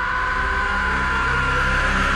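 Horror trailer score building tension: two high held tones slide slowly downward over a low droning rumble that swells in loudness.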